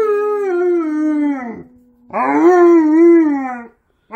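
Alaskan Malamute howling: two long howls with a short break between them, the first sliding slowly down in pitch, the second wavering up and down.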